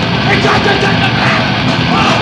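Hardcore punk band playing live at full volume: distorted electric guitars and drums, with shouted vocals over them.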